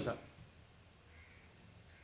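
The end of a man's spoken word, then a pause of near silence with room tone and one faint, brief sound a little past a second in.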